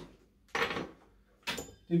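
Metal hand tools clattering as they are handled on a workbench: a short clatter about half a second in and a sharp click about a second and a half in.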